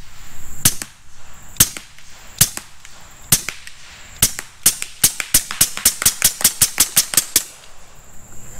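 Huben K1 .25-calibre semi-automatic PCP air rifle firing pellets in quick succession: single shots about a second apart, then a rapid string of about four shots a second from about five seconds in, stopping shortly before the end. A faint steady high insect buzz lies underneath.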